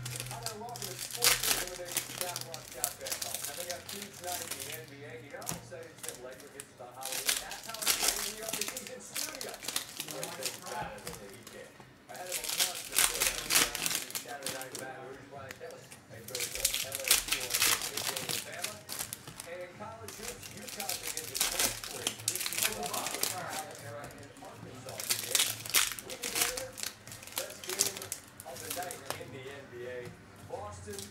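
Foil wrappers of Panini Select football card packs tearing and crinkling as the packs are opened, in bursts every few seconds.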